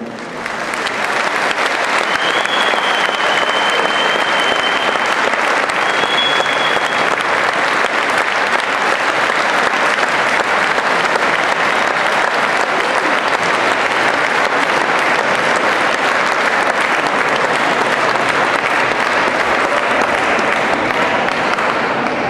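Concert hall audience applauding steadily, swelling up over the first second or so. A high thin whistle sounds for about two seconds near the start and briefly again a few seconds later.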